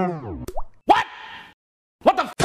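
Banjo background music slowing down and dropping in pitch until it stops, like a tape winding down, followed about a second in by a short rising cartoon-style pop sound effect.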